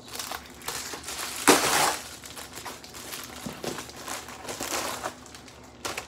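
An Amazon shipping mailer bag crinkling and rustling as it is cut and pulled open by hand, with the loudest burst of crinkling about a second and a half in.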